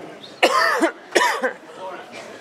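Two loud coughs in quick succession, about half a second apart, close to a microphone.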